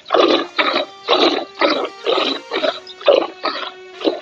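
Milk squirting from a cow's teats into a bowl during hand-milking, in short rhythmic streams about two a second as the hands alternate. Soft background music runs underneath.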